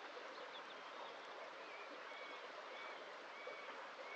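Steady faint rush of a shallow forest stream, with a bird repeating short whistled notes from about half a second in.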